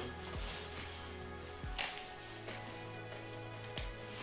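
Background music with a few soft thumps from a backpack being put on, and one sharp click near the end as the backpack's plastic chest-strap buckle is snapped shut.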